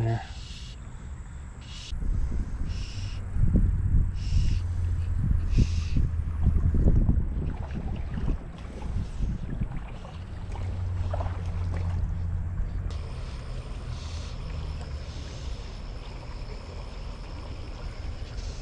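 Wind buffeting the microphone: an uneven low rumble in gusts, strongest through the first two thirds and easing near the end.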